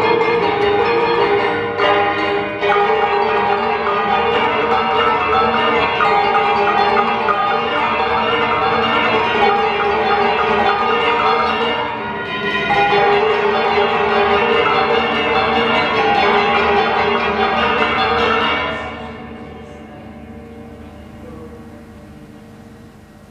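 A percussion ensemble of metallophones and other tuned, bell-like instruments plays dense, ringing music. About 19 s in the playing stops and the ringing dies away.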